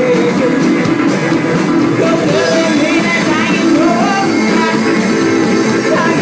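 Live garage rock band playing at full volume: Farfisa organ, electric guitar and drums, with a sung vocal line over them.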